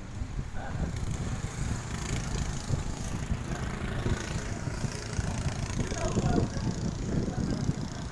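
Wind rumbling on the microphone, with faint voices of onlookers in the background.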